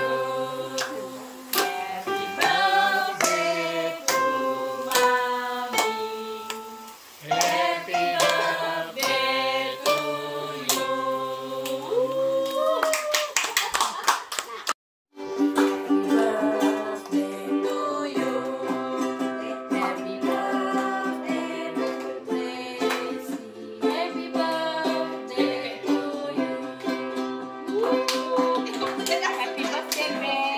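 A family singing a birthday song together, broken by a moment of silence about halfway through; after it, ukuleles are strummed while the group sings and claps along.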